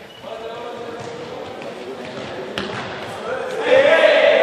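A group of young people's voices echoing in a large sports hall, with thuds of running feet on the hall floor and one sharp knock a little past halfway. The voices get clearly louder near the end.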